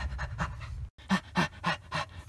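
A person's voice panting out of breath in quick, short, pitched breaths, about four in a second, after a low rumble that cuts off abruptly about a second in.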